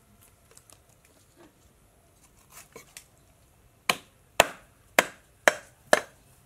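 Cleaver chopping fish on a thick wooden chopping board: five sharp chops about two a second, starting about four seconds in. Before them come faint clicks and handling noises.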